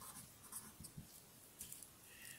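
Faint scratching of a felt-tip marker writing on paper: a handful of short strokes as a word is written.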